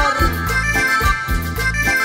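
Cumbia music: an accordion melody over a steady, regular bass and percussion beat.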